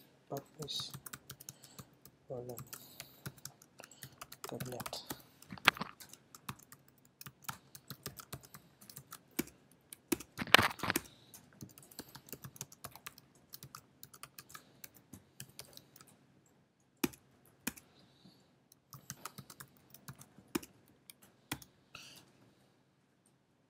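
Typing on a computer keyboard: irregular runs of key clicks as a line of code is entered. There is one louder strike about halfway through and a brief pause near the end.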